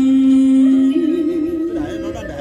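Music for a chèo song-and-dance, led by a voice. The singer holds one long steady note, then about a second in moves up to a slightly higher note sung with an even, wavering ornament.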